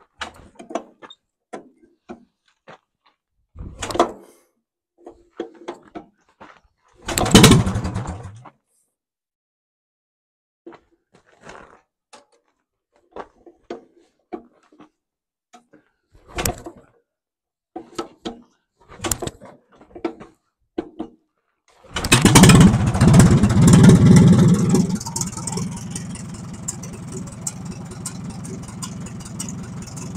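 Short knocks and clatters around the 1949 Case D tractor's four-cylinder engine, with one louder burst about seven seconds in. About 22 seconds in the engine catches and starts, running loudly for a few seconds before settling to a steady idle.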